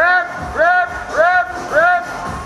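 An electronic tone sounds four times in a row, a little over half a second apart. Each is identical and rises then falls in pitch.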